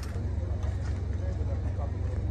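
A steady low engine rumble, like a vehicle or generator running at idle, with faint voices in the background.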